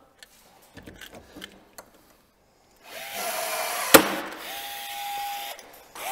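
Cordless drill running under load, drilling a hole through the metal of a snowmobile front bumper for a hood-mount bracket. It starts after a few faint clicks, runs with a steady whine for about three seconds, and gives one sharp snap about a second in.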